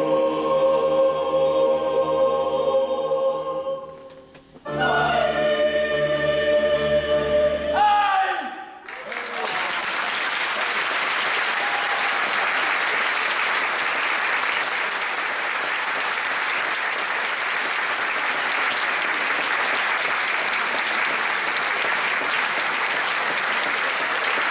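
Youth choir singing sustained final chords: a held chord breaks off about four seconds in, and a last chord rises to a held note that ends about eight and a half seconds in. Steady audience applause follows.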